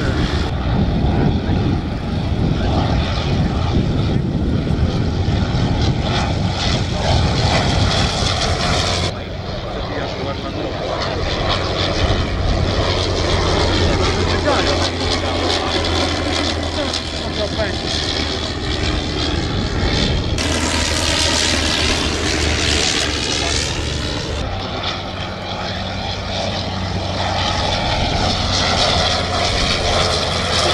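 Sopwith Pup's rotary engine running as the biplane flies by, a steady drone whose pitch slowly bends up and down with the passes. The sound changes abruptly about 9 s, 20 s and 24 s in, where the footage is cut.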